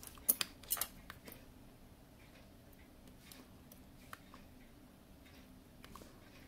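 Light metallic clicks of small watchmaker's hand tools being handled at the open watch: two sharper clicks in the first second, then a few faint scattered ticks.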